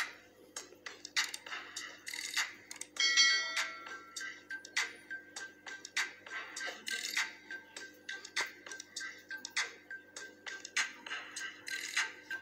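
Intro music with frequent percussive hits, played from laptop speakers and picked up by a phone. About three seconds in, a bright bell-like chime rings out over it.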